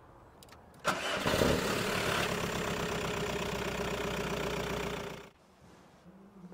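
Car engine being started off a portable 12-volt jump-starter pack: it starts about a second in and settles into a steady idle, then stops abruptly about five seconds in.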